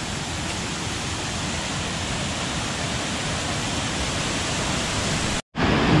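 Waterfall water rushing and cascading over rocks, a steady even hiss of falling water. It cuts out for a moment near the end and comes back a little louder.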